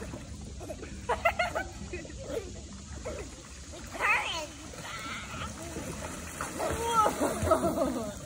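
A young child's high-pitched squeals and babble in short bursts, with water splashing as she swims with an adult.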